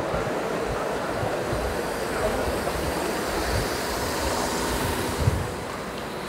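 Steady rushing air noise of ventilation in a cold, air-conditioned hall, with a few soft low thumps of footsteps on a wooden floor.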